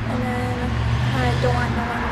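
A low, steady motor hum, like a vehicle running, with a person's voice faintly over it.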